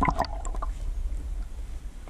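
Water sloshing and lapping against a half-submerged waterproof action-camera housing at the waterline, under a steady low rumble, with a few sharp knocks in the first half-second.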